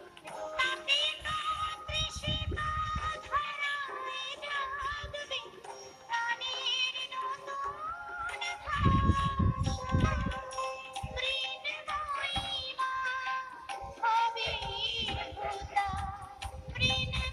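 Recorded Bengali song playing: a woman singing a wavering melody over instrumental accompaniment. A low rumble comes and goes three times under the music.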